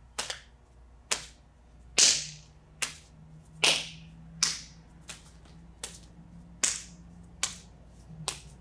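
Wing Chun pak sau slapping blocks: a palm slapping a partner's outstretched arm in a pak tan drill, about ten sharp slaps at roughly one every 0.8 seconds, some louder than others.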